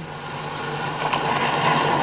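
Steady hiss with a low hum underneath: the background noise of an old sound recording.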